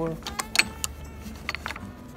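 Golf clubs knocking and clinking against each other in a bag as they are handled, a scattering of sharp clicks from the metal and wooden heads, over a steady low hum.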